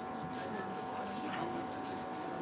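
A steady hum of several fixed tones, with faint indistinct voices in the background.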